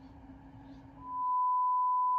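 A single steady, pure test-card tone, the kind played with TV colour bars, fades in about a second in and holds. Before it there is only a faint low hum.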